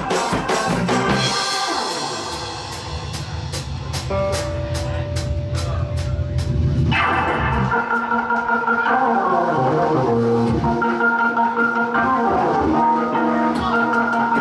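Live band playing: organ and drum kit with bass, the drummer keeping a steady cymbal pulse over a held low note. About seven seconds in, the low end and held note drop away and the organ carries on with sustained chords over the drums.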